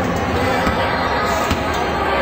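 A basketball bouncing on a hardwood gym floor, a couple of sharp bounces standing out over a steady, loud din of crowd noise and music.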